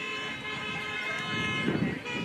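Car horns blaring in a sustained, overlapping honk from around the ground, with a louder low burst of noise near the end.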